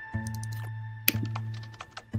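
Computer keyboard keystrokes, a few scattered clicks, over a low sustained synthesizer note that sounds again about once a second.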